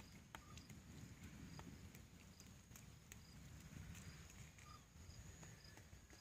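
Near silence: faint outdoor ambience with a low rumble, scattered light clicks and a faint steady high-pitched whine.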